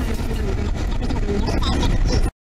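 Steady low rumble of a 1992 Honda's SOHC four-cylinder engine and road noise, heard from inside the cabin while cruising at about 70 mph.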